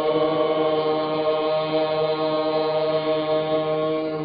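A long chanted vocal note held at one steady pitch over a low, unchanging drone.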